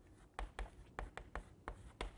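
Chalk writing on a chalkboard: about six short, sharp taps and strokes as letters are written, faint.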